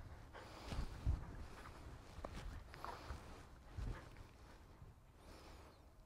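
Faint footsteps on grass as a person and a dog walk a few paces at heel and halt, with a few soft low thuds against quiet outdoor background.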